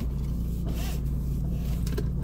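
Car engine idling, heard from inside the cabin as a steady low hum, with a brief soft rustle about a second in.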